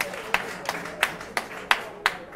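Rhythmic hand clapping at about three claps a second, sharp and even. The claps greet an announcement of 150 jobs.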